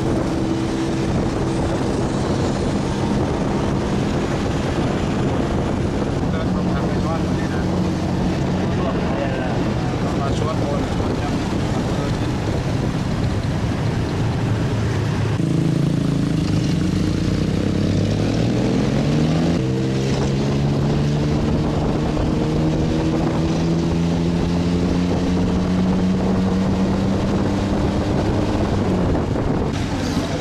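Small motorbike engine running while riding in traffic, with wind on the microphone; about halfway through it revs up in steps as it pulls away, then holds a steady higher pitch.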